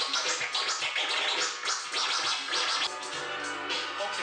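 Vinyl record scratched by hand on a DJ turntable over a music track, in quick back-and-forth strokes about four a second. A steady bass note comes in about three seconds in.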